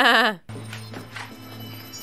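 A woman's laugh with a wavering, pulsing pitch that cuts off about half a second in, followed by a quiet film soundtrack with a low steady hum.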